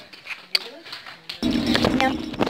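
Steady low engine and road noise inside a car's cabin, cutting in suddenly about two-thirds of the way through, with voices over it. Before it, only faint voices and a single click.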